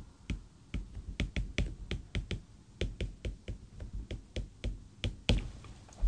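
Stylus tapping and clicking on a tablet screen as a line of words is handwritten: irregular sharp clicks, several a second, with a louder knock about five seconds in.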